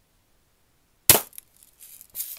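A Daisy Red Ryder spring-piston, lever-action BB gun fires once about a second in. It is a single sharp snap that dies away within a fraction of a second, followed by a few faint scuffs.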